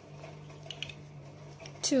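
Plastic toy building blocks being handled and pressed together, giving a few faint clicks about a second in, over a steady low hum.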